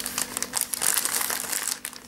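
Plastic bouquet wrapping crinkling as it is handled: a dense run of crackles that thins out near the end.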